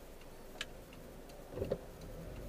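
Faint clicks about once a second, typical of a car's turn-signal indicator ticking, over low cabin road noise.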